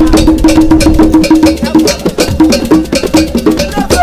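Background music with a fast, steady percussion beat and a repeated pulsing note.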